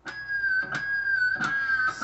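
Amplified electric guitar sounding a high harmonic note, picked about three times in a row and sustained between the picks. The pick moves between the pickups to change the harmonic's tone.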